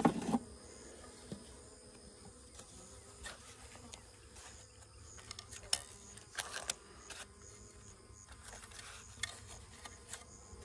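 Honey bees buzzing, a faint steady hum around the hive, with occasional sharp knocks and clicks of wooden hive frames being handled, the loudest knock right at the start.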